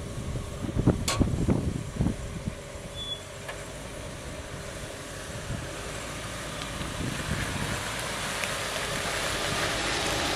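Land Rover Discovery II driving slowly down a slickrock slope, its engine and tyres growing steadily louder as it comes closer. A few low thumps in the first two seconds.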